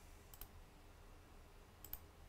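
Computer mouse clicks: two quick pairs of faint clicks, one about a third of a second in and one near the end, over a faint low hum.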